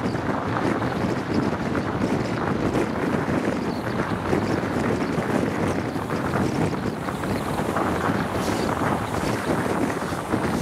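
Wind rushing over a microphone held out of the window of a High Speed Train travelling at speed, with the train's steady running noise on the rails beneath it.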